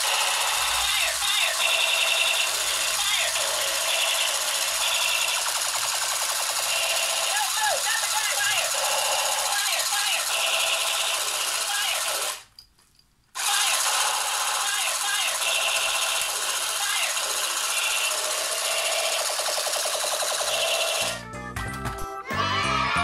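Toy M4A1 musical gun's electronic sound chip playing a continuous rapid machine-gun rattle mixed with rising and falling tones. It cuts out for about a second partway through, then starts again, and fades near the end.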